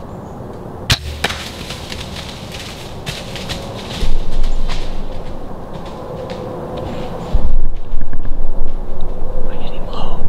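Compound bow shot: a sharp crack of the string release about a second in, with a second snap just after. Then a run of rustling and crackling, turning louder about four seconds in, and a heavy low rumble near the end from the camera being handled.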